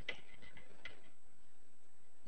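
A few faint, irregular clicks in the first second, over a steady hiss of background noise.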